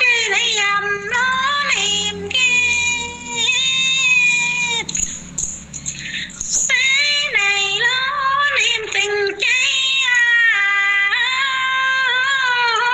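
A woman singing a folk song solo in a high voice, holding long notes that bend up and down. She breaks off for about two seconds in the middle, then sings on. The voice comes as a phone voice-message recording.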